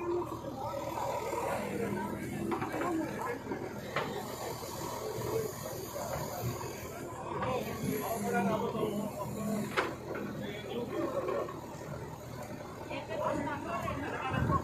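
Indistinct voices of a crowd of people talking over one another, with a couple of short sharp clicks.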